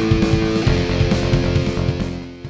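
Background music led by guitar, over a steady beat.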